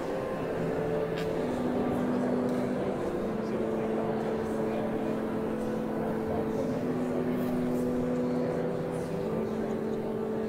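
Organ playing slow sustained chords, the held notes changing every second or two.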